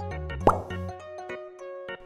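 Cartoon "plop" sound effect, one short quick upward-sweeping pop about half a second in, over light children's background music with a bouncy bass line.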